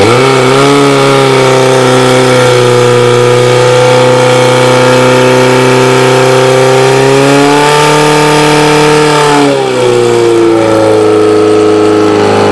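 Portable fire-sport pump engine running at high revs under load, driving water through the hoses. Its pitch climbs a little about two-thirds of the way in, then drops as the engine is throttled back near the end.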